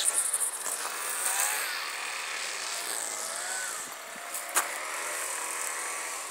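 Weed killer sprayer hissing steadily as it sprays, with a faint wavering hum underneath and a single sharp click a little past halfway.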